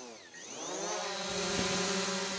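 A logo sound effect. A sweeping tone dips, then glides upward over about half a second into a steady buzzing hum, with a rising hiss swelling over it from about a second in.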